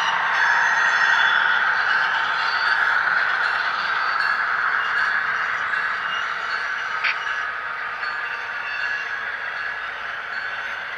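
Model train rolling along the track, a steady rushing noise of wheels on rail and running gear heard from a camera car riding in the train, slowly fading, with a single click about seven seconds in.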